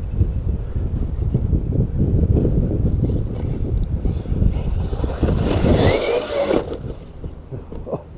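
Heavy wind buffeting on the microphone that stops abruptly about six seconds in. Overlapping its end, about five seconds in, comes the high whine of the Arrma Talion V3 RC truck's brushless electric motor rising in pitch for about a second and a half under hard throttle.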